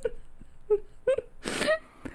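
Quiet laughter in a few short, separate bursts with a breathy gasp about one and a half seconds in, trailing off.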